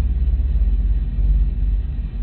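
A steady low hum with faint hiss underneath: the background noise of the recording.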